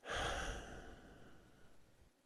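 A man's sigh, a heavy breath out close to the microphone, starting suddenly and fading away over about a second and a half.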